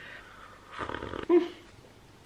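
A sip of coffee from a mug: a soft slurp about a second in, then a brief low hum of enjoyment.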